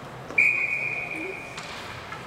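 Ice hockey referee's whistle: one steady, high blast that starts sharply and fades out over about a second.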